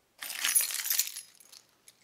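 A bunch of keys jingling and clinking against a glass bowl as they are picked up out of it, for about a second, then dying away.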